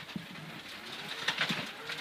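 Mitsubishi Lancer Evolution X rally car's turbocharged four-cylinder engine running at speed on a gravel road, heard from inside the cabin. Its pitch rises through the second half, with a few short knocks from the car.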